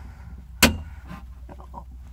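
One sharp click about half a second in as a flathead screwdriver is twisted under the wire retaining clip of a pickup's door lock cylinder, inside the door, over a low steady hum.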